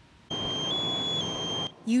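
A high-pitched electronic alarm tone over a background hiss. It holds one pitch, steps up briefly in the middle, then drops back, and cuts off suddenly just before the end.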